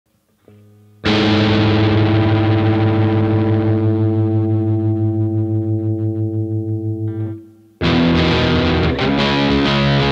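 Distorted electric guitar, an Epiphone SG tuned to drop D-flat, strikes a dissonant chord about a second in and lets it ring with a wavering pulse for about six seconds before it is cut off. After a short gap a riff of repeated low chords starts near the end.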